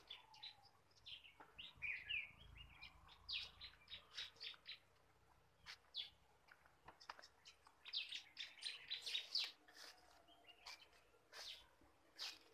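Small birds chirping faintly in short, quick high calls, coming in runs with pauses between, busiest about three seconds in and again about eight seconds in.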